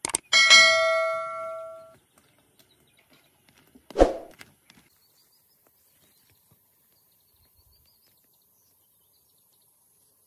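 Subscribe-button animation sound effect: a quick pair of mouse clicks, then a bright bell ding that rings out for about a second and a half. About four seconds in comes a short dull thud, and after that only faint bird or insect chirps.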